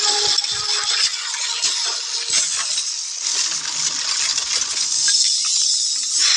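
Film disaster sound effects: dense clattering, rattling and crashing of falling debris and rubble.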